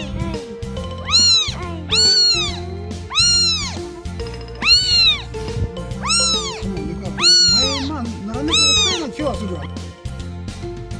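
A newborn kitten, eyes not yet open, mewing repeatedly: about seven high, loud cries, each rising and then falling in pitch, roughly one every second or so.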